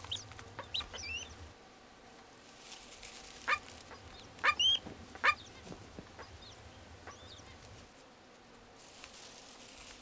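Short, high-pitched bird chirps, about ten scattered over several seconds, coming singly or in quick pairs, the loudest near the middle.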